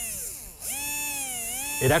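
Brushed 540-size RC electric motor, driven through an electronic speed controller, whining as the throttle is worked: its pitch rises and falls in two sweeps with a brief drop about half a second in, the ESC giving fine control of motor speed.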